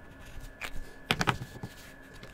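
Plastic felt-tip marker pens and caps clicking as a pen is capped and set down and the next one handled: a single click, then a quick cluster of three louder clicks about a second in.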